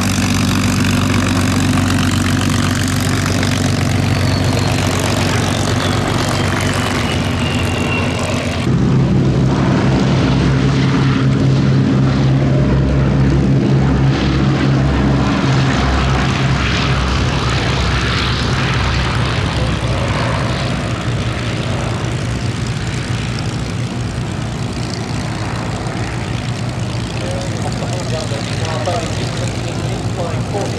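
P-51 Mustang's V12 Merlin engine running steadily at low power while taxiing. About nine seconds in, a cut brings the louder sound of the B-17 Flying Fortress's four radial engines at take-off power during its take-off roll. This engine sound fades gradually as the bomber moves away.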